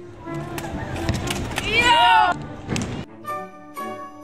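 Background music gives way to live street sound: a few sharp knocks and a loud, pitch-bending voice calling out about two seconds in. The music comes back about three seconds in.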